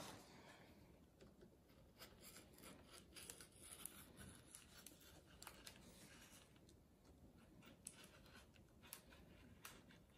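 Near silence, with faint scattered rustles and light taps of printed paper pattern sheets being handled and pressed flat on a cutting mat.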